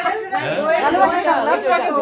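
Several people talking at once: overlapping conversational chatter.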